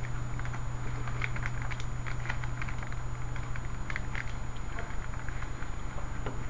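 Laptop keyboard keys tapped in short irregular clicks, the keystrokes of scrolling down through terminal output, over a steady low hum.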